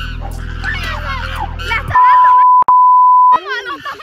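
An edited-in censor bleep: a loud, steady, high single-pitched beep lasting about a second and a half, broken once very briefly, coming in about two seconds in after voices over a music bed.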